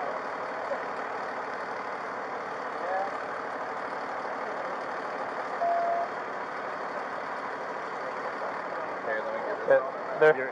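Steady hum of idling vehicles and road traffic, with a short single-tone beep a little past halfway.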